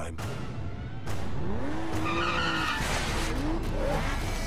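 An Aston Martin DBS sports car's engine revving up, with its tyres skidding and squealing on the road, heard as a film sound effect under trailer music.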